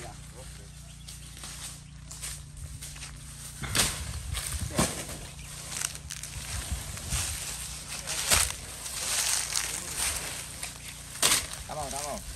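Banana plant trunk being chopped with a blade: four sharp chops a few seconds apart, with rustling of leaves and stems between them.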